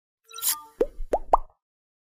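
Animated logo intro sound effect: a brief sparkling shimmer, then three quick plopping tones, each sliding upward in pitch and climbing higher than the one before, ending about a second and a half in.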